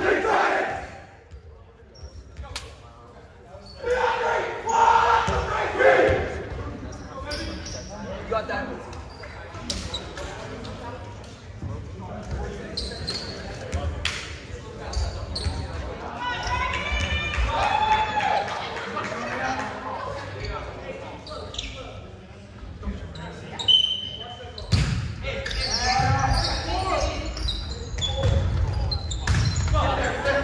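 Volleyball being hit with scattered sharp slaps, mixed with players' voices calling out, all echoing in a large gymnasium.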